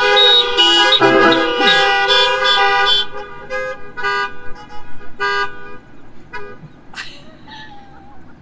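Car horns honking together as a greeting of peace: several overlapping long blasts for about three seconds, then shorter scattered toots that die away by about six seconds in.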